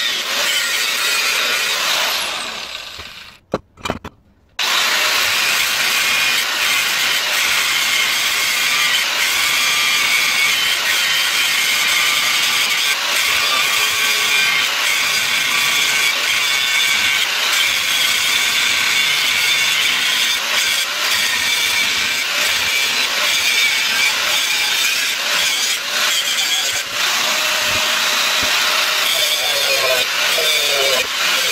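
Angle grinder with a cutting disc slicing through the steel shell of a sealed refrigerator compressor. It winds down and stops about three seconds in, then starts again about a second later and cuts steadily.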